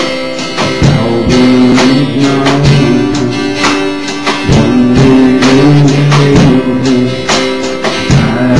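Live worship music carried by a steadily strummed acoustic guitar, with held lower notes sounding beneath the strums.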